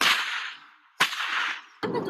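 Two sharp cracks about a second apart, each trailing off over about half a second.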